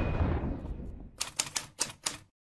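A closing music hit dying away, then a quick run of about eight typewriter keystroke clicks. The clicks are a sound effect for on-screen text being typed out.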